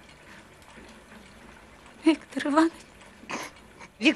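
A woman's voice: one short, tearful, wordless utterance about two seconds in, followed by a quick breathy sound, over faint background.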